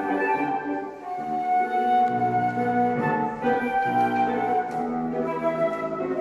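Flute playing a melody of held notes that change every second or so, with grand piano accompaniment underneath.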